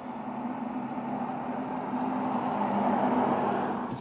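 BMW i4 M50 electric car driving by: tyre noise with a steady low hum, gradually growing louder as the car comes nearer.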